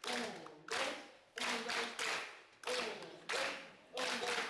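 A roomful of people clapping together in a repeating group rhythm of two claps then three, as a clapping exercise. The claps come in bursts every half to three-quarters of a second, with voices along with them.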